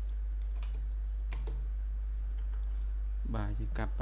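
Scattered clicks of a computer keyboard and mouse over a steady low hum, with a man's voice starting near the end.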